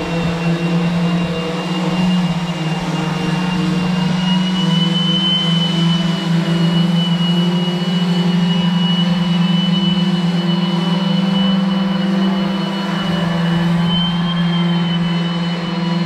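Electric power sanders running steadily against a fiberglass catamaran hull, stripping black antifouling bottom paint. They give a loud, even hum with a thin high whine that wavers slightly.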